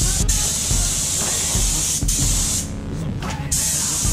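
Compressed-air spray gun hissing steadily as it sprays epoxy primer. About two and a half seconds in, the hiss stops for nearly a second as the trigger is let go, then starts again.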